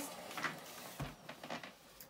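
Faint rubbing and clicking of a latex balloon's neck being handled and tied off, with a soft low thump about a second in.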